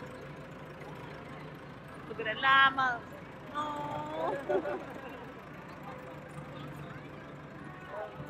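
Outdoor crowd sound over a steady low engine-like hum: a loud, high voice calls out about two and a half seconds in, followed by a second or so of other voices.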